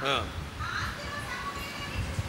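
A pause in a man's sermon. His last word falls off at the very start, then there is faint background voice sound and room noise with no clear speech.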